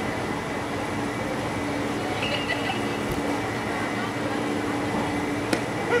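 Ballpark ambience: a steady background noise with a constant low hum and faint distant voices, with one sharp click near the end.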